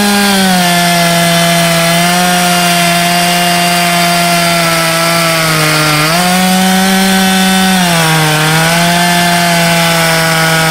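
A Husqvarna 372XP two-stroke chainsaw, fitted with a big-bore kit, cutting at full throttle into an Aleppo pine round. Its engine pitch drops as the chain bites under load, picks back up about six seconds in, and sags again near eight seconds.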